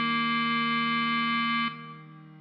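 Clarinet melody holding one long low note over a keyboard backing chord. Both are steady, then cut off sharply about 1.7 seconds in at the end of the phrase, leaving only a faint fading keyboard tail.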